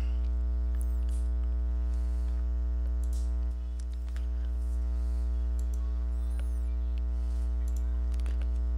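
Steady electrical mains hum with a stack of overtones, dipping briefly about three and a half seconds in, with a few faint mouse clicks.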